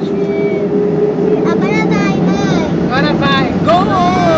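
Steady cabin hum of a Boeing 767-200 taxiing on its engines, with a faint steady tone that fades about a second and a half in. A person's voice is heard over the hum from then on.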